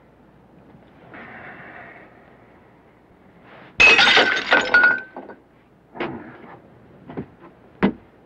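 A sudden loud crash of something breaking, with ringing glassy clinks through it, lasting a little over a second; then three short separate knocks.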